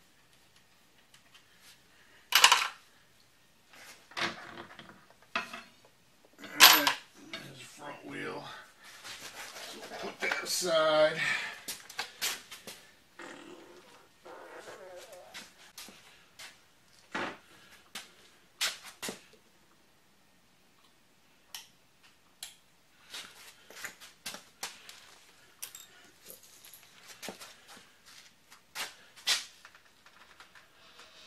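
Clanks, knocks and rattles of wrenches and metal parts as a Honda Shadow's front wheel and axle are taken off the forks: two loud sharp clanks a few seconds in, then lighter scattered taps and clicks.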